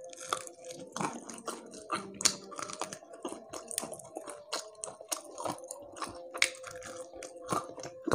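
Close-miked chewing of crispy fried catfish: a steady run of short, dry crunches and crackles as the batter-coated fish is bitten and chewed.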